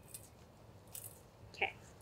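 Faint, brief rustling hisses, twice, as dried herbes de Provence are shaken from a jar into a bowl of softened butter.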